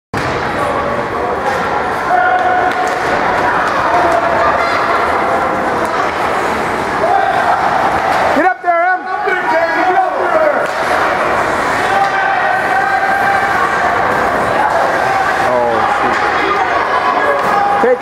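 Spectators' voices in an indoor ice rink during a youth hockey game: overlapping shouting and chatter, with one voice standing out clearly about halfway through.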